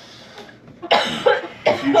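A person coughing: a short, sudden cough about a second in.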